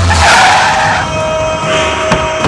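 A Mahindra Scorpio SUV skidding to a halt on dirt: a loud hiss of tyres sliding, fading out after about a second.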